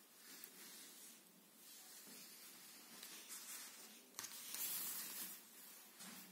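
Faint rustling of hands handling crocheted yarn fabric, with a louder brushing rustle about four seconds in.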